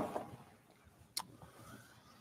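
A small wall clock being picked up and handled: one sharp click about a second in, with faint rustling around it.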